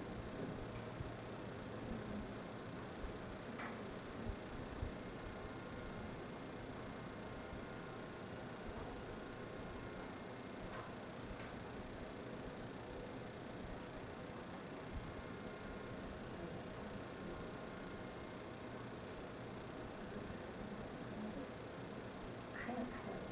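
Quiet room tone: a steady faint hiss with a light electrical or ventilation hum, broken by a few soft knocks about three to five seconds in.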